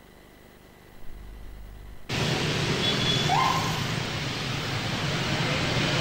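Steady road-traffic noise at a street intersection starts about two seconds in, after a near-silent gap, with a short rising tone about a second after it starts.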